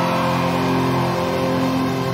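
Pop punk band recording in an instrumental passage: distorted electric guitars and bass holding steady, ringing chords, with no vocals.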